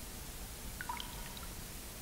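Steady hiss of an old tape recording, with a brief cluster of faint, high, drip-like plinks about a second in.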